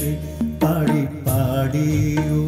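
Male vocalist singing a slow, ornamented melody line of a Malayalam film song over instrumental accompaniment, holding and bending long notes.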